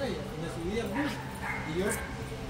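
A dog making a few short rising-and-falling whimpering cries.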